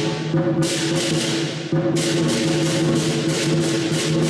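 Southern lion dance percussion band of a large drum and hand cymbals playing the dance accompaniment, with crashes about four times a second over a steady ringing tone. The cymbal crashes drop out briefly a little before halfway through and then come back.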